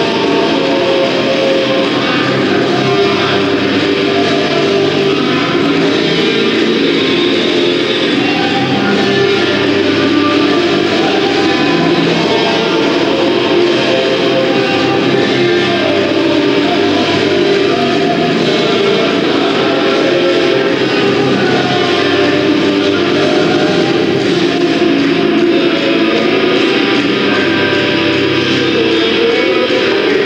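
Loud nu-metal music with distorted electric guitars, playing steadily throughout.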